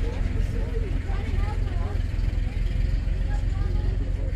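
Distant voices talking over a steady low rumble.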